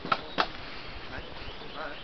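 Two sharp knocks about a third of a second apart, the second the louder, with people talking nearby.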